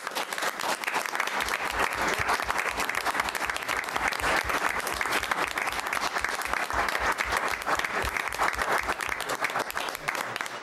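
Audience applauding, many people clapping steadily.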